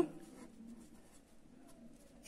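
Faint strokes of a felt-tip marker writing a word on paper.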